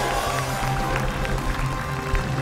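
Lively music with sustained notes over a pulsing bass line, played while the contestants dance.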